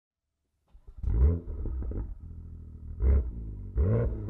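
BMW M2's 3.0-litre turbocharged straight-six starting up just under a second in with a sharp flare of revs, then settling to a steady idle. Its exhaust is blipped twice near the end.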